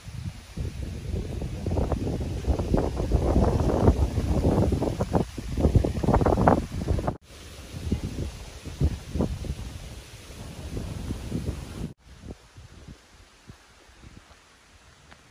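Wind buffeting the microphone in gusts, a low, uneven rumble. It is loudest over the first seven seconds, breaks off abruptly, comes back weaker, and dies down about twelve seconds in.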